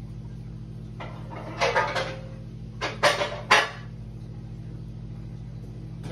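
Kitchen handling noises while someone fetches something: a scraping clatter about a second in, then three sharp knocks around three seconds in, like a cupboard or drawer and utensils being handled. A steady low hum runs underneath.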